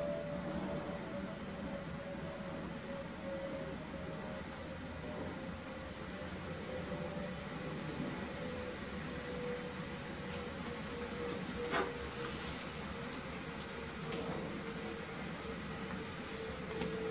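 Steady whir of a running desktop computer's cooling fans with a faint hum, and a single sharp click about twelve seconds in.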